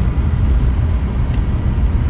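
A car driving on a smooth paved road, heard from inside the cabin: a steady low rumble of engine and tyres.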